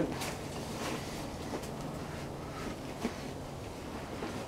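Faint rustling of a fabric potato grow bag and its soil as hands dig through it, with a few soft clicks; the most distinct comes about three seconds in.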